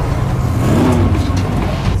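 A car engine revving over a deep low rumble. Its pitch rises and then falls about a second in.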